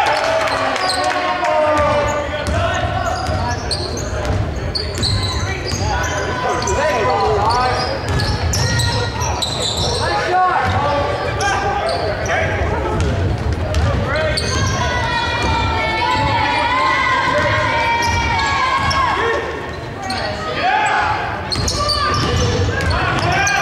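Many spectators' voices overlapping in a gymnasium, with a basketball bouncing on the hardwood court during play.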